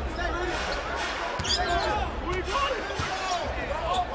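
Basketball game sound in a large arena: a steady crowd murmur, with short squeaks of sneakers on the hardwood court and the ball bouncing. A sharp knock comes about a second and a half in.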